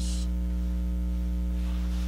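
Steady electrical mains hum with a buzzy stack of overtones, unchanging throughout.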